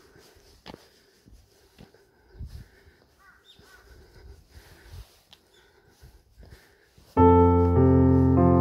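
Faint footsteps on a paved path with a few bird calls. About seven seconds in, loud piano music starts abruptly.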